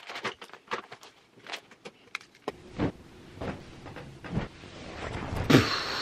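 Household handling noises while tidying a room: a run of separate clicks and knocks as things are picked up and set down, then a rising rustle with a louder knock near the end.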